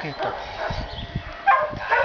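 A dog gives a short, high-pitched whine or yip about one and a half seconds in, after a stretch of soft handling noise.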